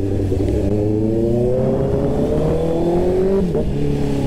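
Honda CBR650R inline-four motorcycle engine accelerating, its pitch rising steadily, then dipping briefly about three and a half seconds in as it shifts up a gear.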